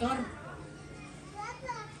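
A pause in a woman's speech: her voice trails off at the start, then only faint background voices remain, with a brief faint voice about a second and a half in.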